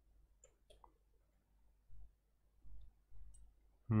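A few faint clicks from computer keyboard and mouse use about half a second in, then a few soft low thumps in the second half.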